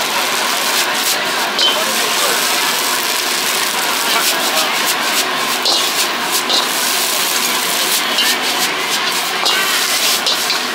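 Gas wok burner running steadily under a wok of stir-frying rice noodles, with sizzling and an occasional scrape and clink of a metal spatula against the wok.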